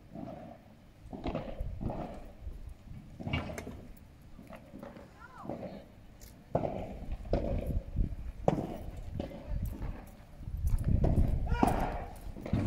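Padel rally: the ball is struck with paddles and bounces off the court and glass walls in sharp knocks roughly a second apart, with players' voices. A louder burst of voices and movement comes near the end.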